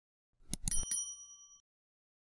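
Subscribe-button sound effect: a few quick mouse clicks, then a short bright notification-bell ding that rings for under a second and stops abruptly.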